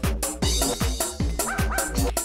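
Hard electronic dance music with a heavy kick drum at about two beats a second and bright hi-hats. In the second half, short sampled dog barks come in over the beat.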